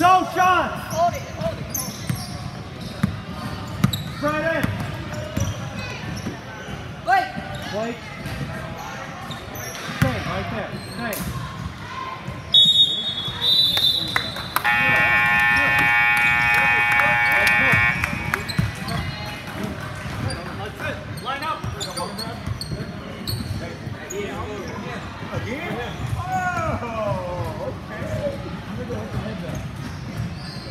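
Basketball game sounds in a gym hall: a ball being dribbled on the court and voices of players and spectators. A referee's whistle blows briefly a little before halfway, then the scoreboard buzzer sounds steadily for about three seconds.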